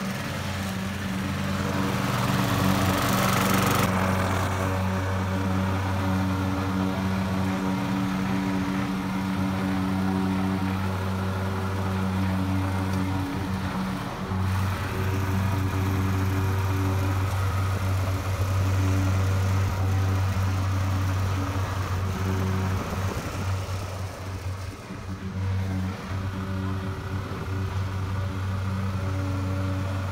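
Gas-powered walk-behind lawn mower running steadily, with background music over it.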